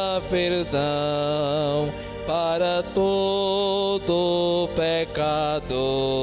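Slow Eucharistic communion hymn: long held melody notes with a wavering pitch, changing every second or so with short breaks, over a steady low accompaniment.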